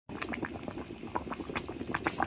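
Pot of pork and green-vegetable soup bubbling at a boil, the broth giving off a quick, irregular run of small pops.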